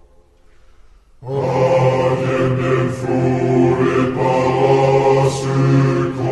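Slowed-down, heavily reverberant recording of a choir singing a French military song. After about a second of quiet, the voices come in together and sing on with long held notes.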